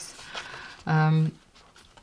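A woman's audible breath, then a short hesitation hum held at one pitch for about half a second.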